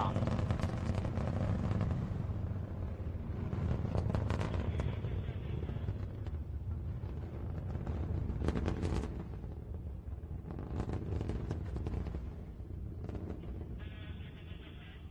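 Long March 5 rocket engines heard from the ground after liftoff: a deep rumble shot through with ragged crackling. It fades steadily as the rocket climbs away.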